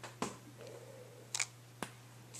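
A stamp being pressed onto a paper card front and lifted off: a few light clicks and taps of the stamp and its block against the paper and table, over a steady low hum.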